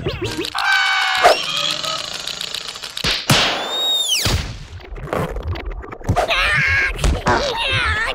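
Cartoon sound effects and the larvae's wordless vocal cries. A held wail comes in the first second, a swooping tone about three seconds in, then a string of thuds and knocks mixed with squeaky cries near the end.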